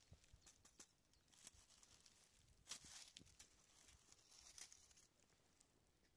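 Near silence with faint, scattered crackling and rustling of dry oak leaves and pine needles being stepped on and handled, a few slightly louder crackles about midway and near the end.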